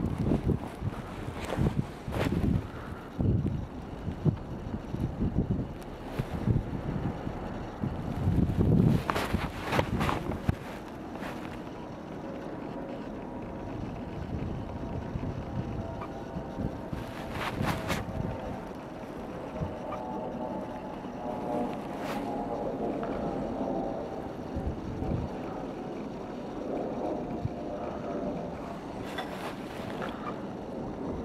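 Wind buffeting the camera microphone outdoors, with irregular low thumps through the first ten seconds or so, then a steadier rumble carrying a faint steady hum.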